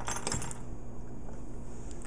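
A few light clicks and clinks in the first half second as a metal-hooked jig lure is handled and set down on a wooden table, then only a faint steady hum.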